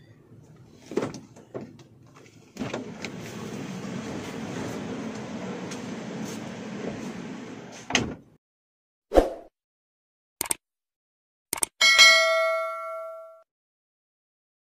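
A car door opens, letting in a steady outside hum, and shuts with a knock about eight seconds in. A few muffled knocks follow as the rear hatch of the loaded vehicle is opened, then a single ringing metallic clang that dies away over about a second and a half.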